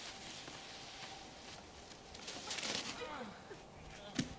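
Faint distant voices, with a brief soft hiss about two and a half seconds in.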